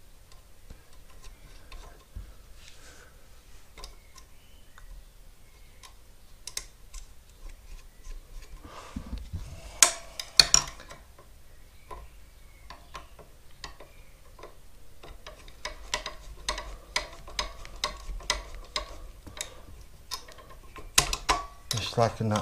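Small metallic clicks and taps of a screwdriver and screws being worked on a mobility scooter motor's electric brake. The clicks are scattered at first, with a sharp cluster about ten seconds in, then a fast run of light ticks near the end as the screws are turned.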